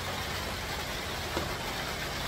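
Steady rain falling, an even hiss with no break, and one faint small click about a second and a half in.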